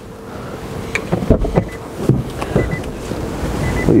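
Rustling and knocks from a handheld camera being moved around inside a car, with a low rumble of wind on the microphone building from about a second in.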